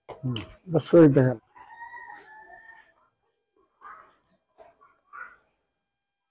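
A person's voice speaks briefly and loudly at the start. Then a rooster crows faintly in the distance for about a second, followed by a few faint short sounds.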